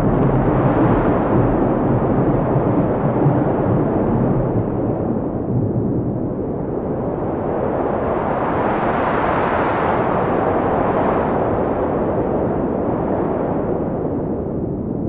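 A loud, continuous rumbling roar of noise with heavy bass. It grows brighter partway through, swelling up around two-thirds of the way in, then dulls again toward the end.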